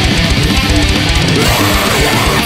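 Heavy metal music: a distorted BC Rich electric guitar playing a fast deathcore riff over a full band recording with rapid, even double-kick drumming.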